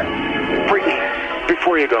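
Pop song going into its spoken bridge: the bass drops out, and from about a second in a voice with a thin, radio-like sound comes in over the lighter backing.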